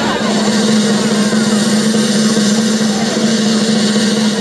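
Outdoor crowd noise mixed with music from the stage's sound system, over a steady low drone.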